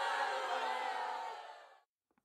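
Studio audience crowd noise, many voices shouting at once, fading out and stopping shortly before the end.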